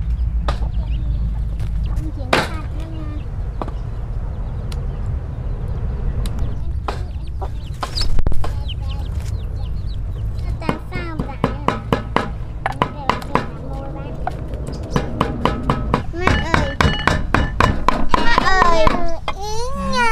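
Domestic hens and chicks clucking and calling while foraging, the calls coming thicker and faster in the second half, over a steady low hum.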